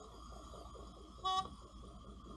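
A single short horn toot, about a fifth of a second long, over the steady hum of the dive boat's engine and the rush of its wake.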